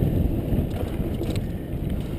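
Wind buffeting a camera microphone on a mountain bike riding a dirt singletrack, over the rumble of the tyres on the trail, with a few short rattling clicks from the bike.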